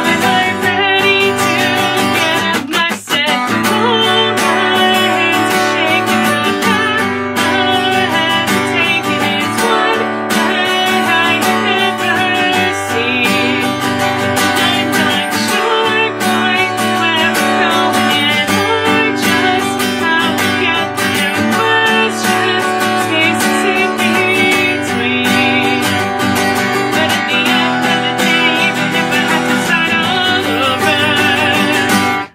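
Steel-string acoustic guitar strummed in steady chords as a song accompaniment, with a short break about three seconds in.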